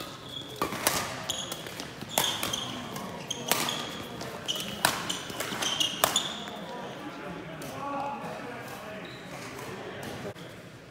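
Badminton rally in a sports hall: about six sharp racket strikes on the shuttlecock, roughly one every second and a bit, with short shoe squeaks on the court floor between them. The strikes stop about six seconds in, and a voice is heard briefly afterwards.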